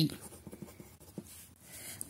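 Pen writing on ruled notebook paper: faint scratching strokes with a few small ticks as letters are written.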